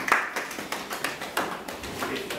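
Scattered hand claps, a few a second and irregular, strongest at the start and tailing off.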